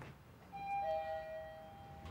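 Two-note ding-dong doorbell chime: a higher note, then a lower one a moment later, both ringing on and fading over about a second and a half.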